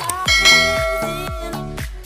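A bright bell-ringing sound effect strikes about a third of a second in and rings out, fading, over electronic dance background music with a steady beat.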